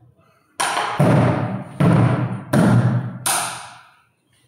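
Music with heavy, low drum-like beats, about one every three-quarters of a second, each ringing out after the hit; it starts about half a second in and fades just before the end.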